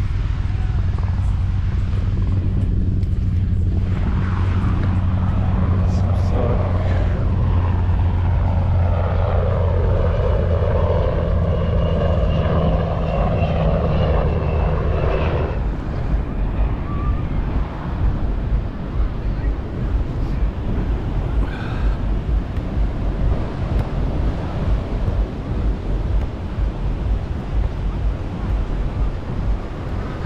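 A propeller airplane drones overhead, a steady low hum that stops abruptly about halfway through. After that, beach noise of surf and wind rises and falls unevenly.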